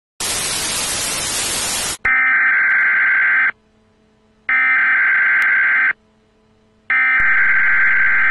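Television static hiss for about two seconds, then an emergency-broadcast alert tone sounding three times. Each steady beep lasts about a second and a half, with about a second of silence between them.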